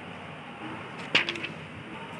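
A sheet of drawing paper handled by hand: a quick cluster of sharp paper crackles a little past halfway, over a steady low hiss.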